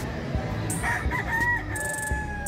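Gamefowl rooster crowing: a broken opening about a second in, then a long held final note, over the low noise of a crowded hall.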